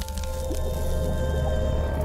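Short music sting for an animated logo: a held chord over a deep, steady low tone with a busy noisy layer, starting with a sharp hit just before and dropping away right at the end.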